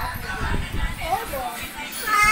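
Brief, indistinct voice sounds with short wavering pitch, over low rumbling that fades out about one and a half seconds in.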